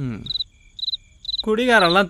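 Crickets chirping in short, evenly spaced chirps, about two a second, behind a man's voice that trails off at the start and comes back in about one and a half seconds in.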